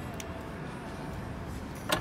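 Volvo XC40 power tailgate closing under its electric motor with a faint steady hum, then latching shut with a single sharp clunk near the end.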